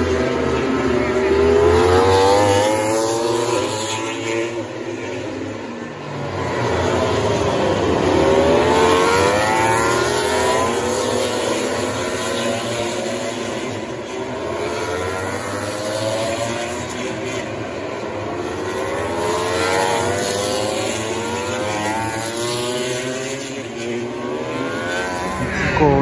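Racing motorcycles running through a corner, several engines overlapping. Their pitch sweeps down as they brake and shift down, then climbs again as they accelerate away, swelling louder as bikes pass and fading between them.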